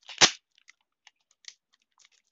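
A single sharp knock about a quarter second in, then faint scattered crackles and ticks of a thin sheet being handled by hand.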